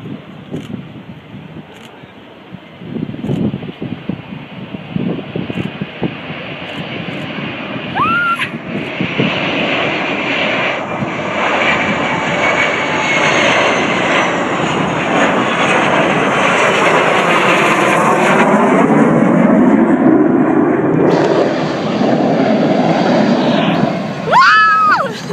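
Four jet engines of the Boeing 747 Shuttle Carrier Aircraft flying low overhead. The engine noise swells over the first several seconds and is loudest in the second half, with a sweeping, shifting sound as the aircraft passes. A short rising whistle about eight seconds in.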